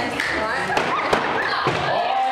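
Thrown axes striking wooden target boards: a few sharp thuds starting about three-quarters of a second in, the loudest one near the middle, over voices in the room.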